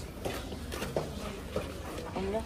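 A tour group shuffling and walking across a stone floor, with faint irregular footsteps, low murmur of people and a steady low rumble.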